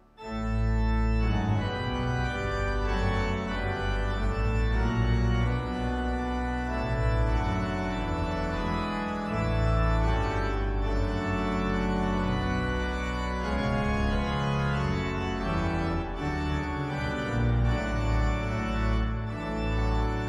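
A two-manual digital organ playing a hymn tune in full chords with a strong pedal bass line, coming in straight after a brief silence.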